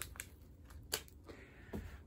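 Quiet room with a few faint, sharp clicks and light handling noises, the loudest about a second in.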